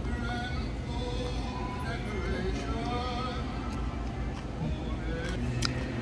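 Background music with a singing voice, over a steady low room hum, with a few sharp clicks near the end.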